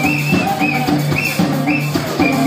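Live band playing up-tempo music: a drum kit keeps a steady beat under bass, guitars and a melodic line from the horn section.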